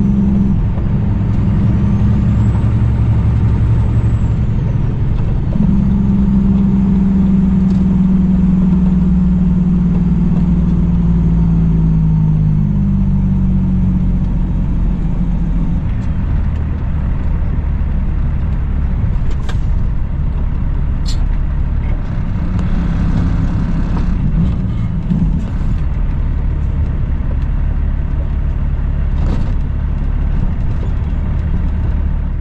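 Cummins ISX diesel engine of a 2008 Kenworth W900L heard from inside the cab while driving: a steady drone whose pitch steps up about five seconds in, then falls slowly over the next several seconds and stays lower after that. A few faint clicks come about two-thirds of the way through.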